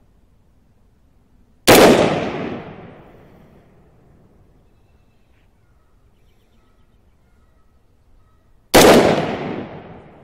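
Two shots from an AR-15 rifle firing .223 rounds, about seven seconds apart, each a sharp crack followed by an echo that dies away over about a second and a half.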